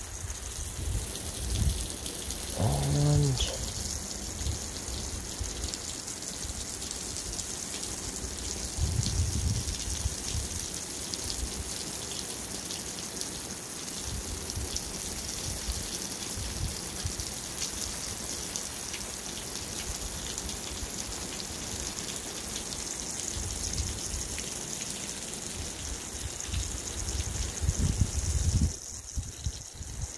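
Water spraying onto a garden bed and soil, a steady hiss with low rumbles on the microphone. A brief pitched sound comes about three seconds in, and the spray drops away just before the end.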